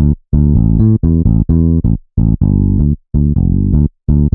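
Electric bass preset ('BA Real E-Bass') of the Vengeance Avenger software synth, played from a keyboard: a bass line of plucked notes, broken by a few short gaps.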